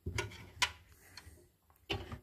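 Laundry being pulled by hand from a front-loading washing machine drum: a few light clicks and knocks, about four in two seconds, with soft fabric handling between them.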